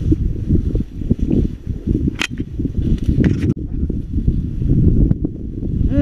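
Soybean plants brushing and rustling against someone walking through a dense field, with wind buffeting the microphone. A sharp click about two seconds in.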